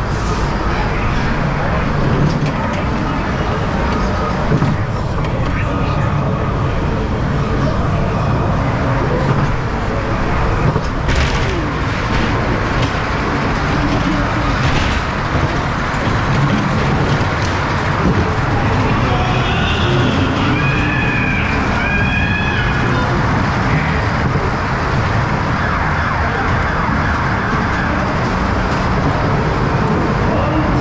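Aboard a Mack two-storey ghost train: a steady low rumble of the ride car running on its track, with the ride's voices and spooky sound effects over it. Around twenty seconds in comes a wailing, siren-like sound with a few wavering pitches.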